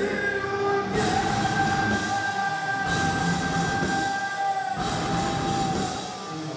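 Metal band playing live through a loud PA, recorded from the crowd: a steady, high distorted guitar tone is held over the band for nearly five seconds and breaks off near the end.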